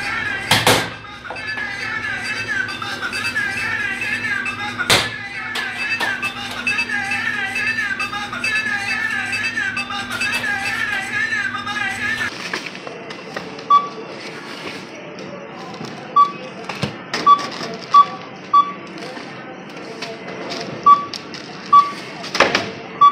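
Background music with a wavering melody for roughly the first half. After an abrupt change about twelve seconds in, a supermarket checkout barcode scanner beeps again and again at irregular intervals as items are passed over it, with occasional knocks of goods on the counter.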